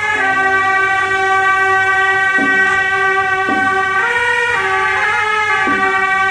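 Several suona (Chinese shawms) playing a melody in unison in long held notes, changing pitch a few times.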